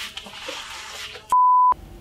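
A single steady electronic beep, a pure tone lasting about a third of a second about 1.3 seconds in, with all other sound cut out around it. Before it there is only faint room tone.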